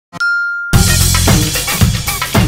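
A click and a single high ding lasting about half a second, then intro music with a strong bass and drum beat starts under a second in.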